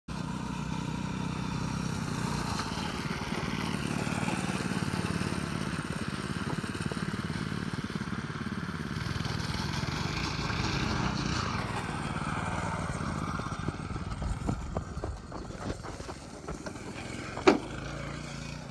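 Small go-kart engine running, its pitch rising and falling as it revs, then fading out about fourteen seconds in. After that come scattered knocks and clatter, with one loud knock near the end.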